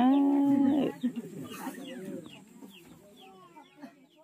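A voice trails off about a second in, then chickens cluck faintly, with a run of short falling chirps, as the sound fades away.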